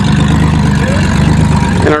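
Chevrolet Cavalier's engine running at low speed close by, a steady low drone with an even pulse.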